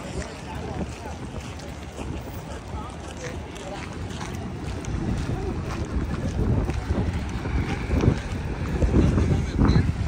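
Wind buffeting the microphone in irregular gusts that grow stronger in the second half, over city street ambience with voices of passers-by.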